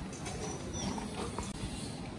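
Footsteps of someone walking on a paved street, over a steady low rumble of outdoor street noise.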